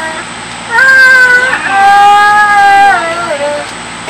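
A person's long, high-pitched vocal wail, held on two steady notes, one after the other, starting about a second in: a drawn-out cry of dismay at a draw-ten card in a card game.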